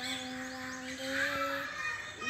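A child singing, holding one long steady note that ends shortly before the close, with birds chirping in the background.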